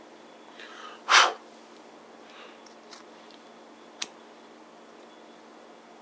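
A person sneezing once, loudly, about a second in, with a short breathy intake just before it. Two faint sharp clicks follow a couple of seconds later.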